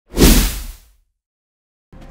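A single whoosh sound effect with a deep boom underneath, for the news program's logo sting. It swells quickly and fades out within about a second.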